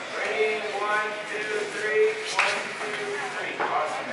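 Voices of people talking in a large room, with two sharp clicks or knocks about two and a half and three and a half seconds in.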